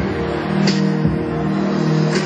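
Instrumental music from a minus-one backing track played over a PA, with held chords and a few drum hits and no singing.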